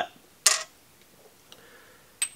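A single sharp clink about half a second in as a small glass sample bottle is picked up off the table, followed by a few faint ticks of glass handling.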